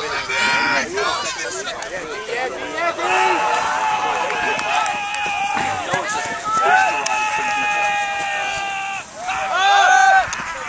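Several people shouting across an ultimate frisbee field, their voices overlapping. Two long, held yells stand out, one starting about three seconds in and one from about seven seconds.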